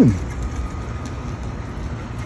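Steady low outdoor rumble of street background noise, like distant traffic, with a few faint ticks over it.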